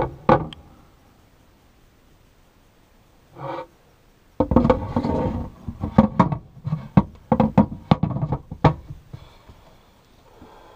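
Sink cover being handled and set down on a motorhome kitchen sink. There are two sharp knocks at the start, a brief bump about three and a half seconds in, then several seconds of clattering knocks as it is fitted into place.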